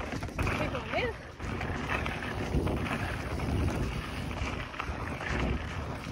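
Wind buffeting the microphone and mountain bike tyres rolling over a dry dirt trail on a fast descent, a steady rushing noise with irregular bumps.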